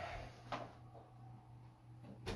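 Faint handling of a plastic Dyson tower fan as it is tipped over onto its side, with one light click about half a second in.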